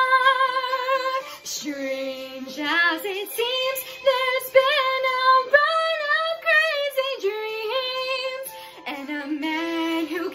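A young woman singing solo in a musical-theatre style. She holds a long note until just over a second in, then sings a string of higher, wavering notes with heavy vibrato, with a short break near the end.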